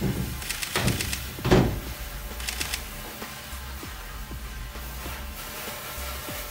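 A firework rocket's fuse burning in a fizzing hiss as it sprays sparks, with a few louder crackles in the first two seconds. Background music with a steady bass runs underneath.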